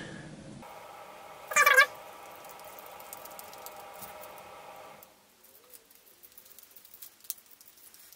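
Light clicks and taps of screws and a screwdriver being handled on a table, faint in the second half. A steady hum runs through the first half, and there is one brief pitched cry about one and a half seconds in.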